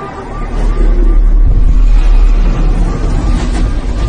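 An electronic siren warbling, its pitch rising and falling about three times a second, over a loud low rumble that swells in about half a second in.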